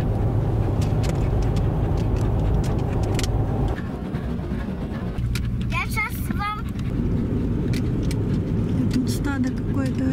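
Steady low road rumble of tyres and engine heard inside a moving car's cabin. A brief high-pitched voice cuts in about six seconds in, and voices return near the end.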